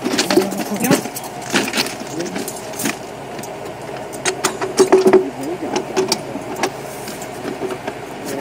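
Irregular metallic clicks and clanks of a steel rail clamp being fitted and adjusted on a rail, with a steady engine running underneath and workers' voices at times.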